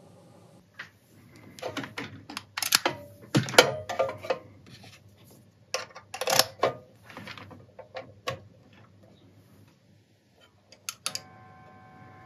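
Cables being plugged into a Mooer 005 micro preamp pedal: a string of short plastic and metal clicks and knocks as the jack and XLR plugs go in and are handled. About a second before the end a steady electrical buzz comes in.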